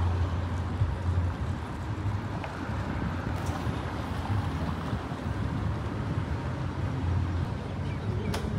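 Steady road-traffic noise: a low rumble of cars moving slowly past.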